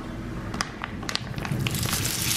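Hot olive oil in a frying pan, faintly crackling with a few sharp clicks; near the end the first gnocchi drop in and the frying sizzle begins.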